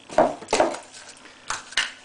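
A few sharp clacks of spread jars, lids and a plastic tub being handled and set down on a stone worktop as one jar is closed and another picked up: one about half a second in and two close together near the end.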